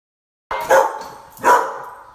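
A dog barking twice, about a second apart, the first bark about half a second in.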